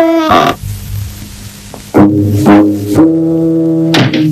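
Cartoon score: after a brief moan at the very start, a low wind instrument plays two short notes about halfway through, then holds one long steady note.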